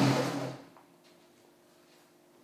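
A man's forceful exhale with a short low grunt of effort as he starts a hanging leg raise, loud at first and dying away within about half a second.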